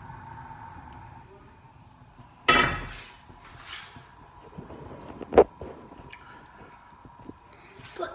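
A frying pan set down on a gas hob's pan support with a clatter about two and a half seconds in, then a single sharper knock, the loudest sound, a few seconds later.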